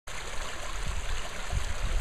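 Small shallow stream running steadily between grassy banks, with a few low rumbles underneath.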